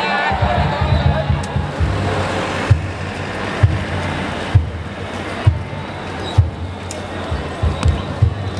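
Danjiri festival drum (taiko) struck in a steady beat, a low thump a little under once a second, over a din of voices.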